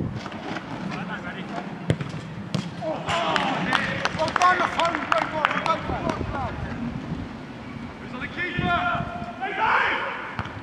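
Footballers shouting and yelling over one another on the pitch for a few seconds around a goal-mouth chance, with sharp thuds of the ball being struck. One thud comes about two seconds in. More shouts follow near the end.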